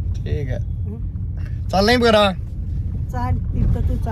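Steady low rumble of a car's engine and road noise heard inside the cabin, with brief voices over it and one short, loud vocal outburst about two seconds in.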